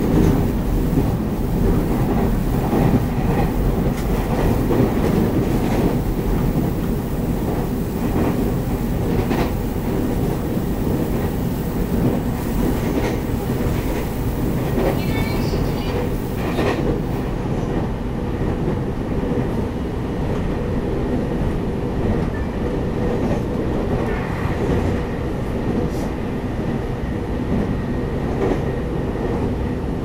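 Cabin running noise of a Taiwan Railways EMU800 electric multiple unit at speed: a steady rumble of wheels on rail, with scattered sharp clicks as the wheels pass rail joints.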